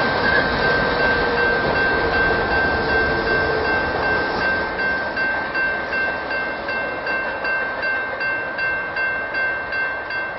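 Union Pacific freight train of empty oil tank cars rolling past, its wheels rumbling and clacking on the rails and slowly fading as the cars move away. A grade-crossing warning bell rings steadily over it.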